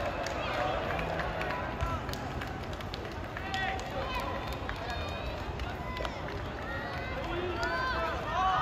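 Distant shouts and calls from players and sideline teammates across an open sports field during play, short separate cries over a steady background hiss, with more voices joining in near the end.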